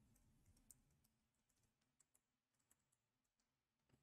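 Near silence, with a few very faint computer keyboard clicks.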